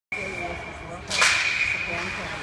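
Ice hockey faceoff: a sharp scraping swish of skate blades and sticks on the ice about a second in, over a steady high-pitched tone in the rink.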